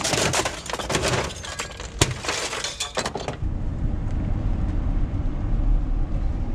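Clattering and crackling of plastic and metal junk being shoved into a pickup truck bed, with sharp clicks, for about three seconds. It cuts off suddenly to a steady low rumble of the truck running, heard from inside the cab.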